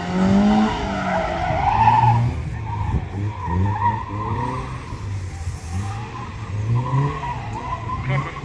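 Competition car's engine revving up and dropping back several times in short bursts of acceleration, with tyres squealing and scrubbing on the tarmac as the car is flung through tight turns.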